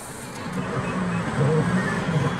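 A car engine running amid outdoor traffic noise, with faint low voices in the background.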